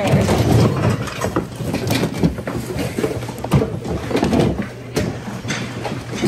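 Hands rummaging through a packed bin of secondhand goods and pulling out a fabric child carrier with a folding frame: fabric rustling with irregular knocks and clatters of hard parts, over a steady low hum.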